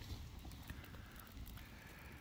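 Faint crackling of a wood campfire, with a few light knocks as split firewood is laid on it, over a low wind rumble on the microphone.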